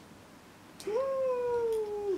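A cat meowing once, about a second in: a single drawn-out call that rises quickly at the start, then slowly falls in pitch before breaking off.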